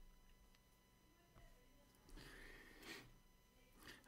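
Near silence: faint room tone, with a soft, faint swell of noise about two seconds in.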